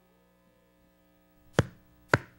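Faint steady electrical hum, then a single sharp tap about one and a half seconds in: the first beat of an evenly spaced count-in before a guitar-led band starts playing.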